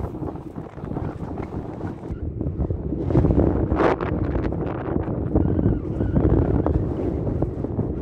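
Wind buffeting the camera microphone: a low, gusty rush that gets louder about three seconds in, with a brief sharper hiss just before four seconds.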